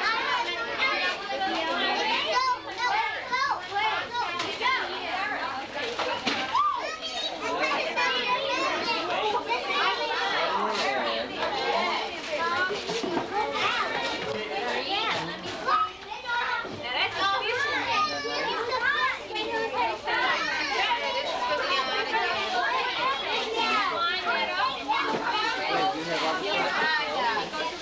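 Many children's voices chattering and shouting over one another without pause, a steady din of kids at play in a room.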